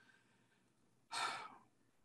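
A person's single short audible breath, a little over a second in, during a pause in speech; otherwise near silence.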